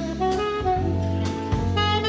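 Live jazz-fusion band playing: a saxophone melody of held notes over electric bass guitar and a Premier drum kit.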